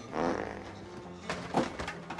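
A comic flatulence-like sound effect shortly after the start, from bowels upset by a laxative, over background music. Two sharp knocks follow a little past the middle.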